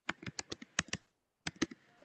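Quiet typing on a computer keyboard: a quick run of keystrokes in the first second, a short pause, then a few more about a second and a half in.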